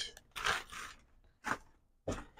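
Crumpled packing tissue paper rustling as it is pulled out of a cardboard box, in two short bursts: one about half a second in and a sharper crinkle about one and a half seconds in.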